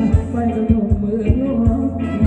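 Thai ramwong dance music played live by a band, with a steady low drum beat about three times a second under a bass line and melody.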